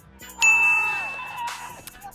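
A bright chime sound effect rings out about half a second in, one clear high note over lower tones, and fades away over a second or so, with background music under it.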